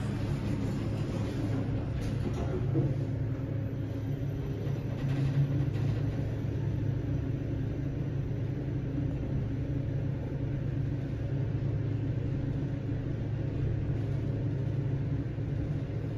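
Original KONE traction elevator car travelling down the shaft: a steady low rumble and hum inside the cab.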